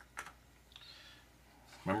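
A few light clicks and taps of small plastic model parts being handled on a cutting mat, two sharp ones at the start and a faint brief rustle just under a second in.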